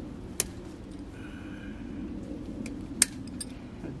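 Two sharp metallic clicks about two and a half seconds apart: pliers working plastic-coated wire fencing as it is bent open, over a steady low background hum.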